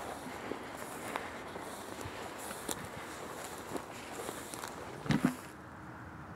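A person walking through frost-covered grass and stubble, irregular footsteps and rustling of brush and clothing, with a louder knock about five seconds in.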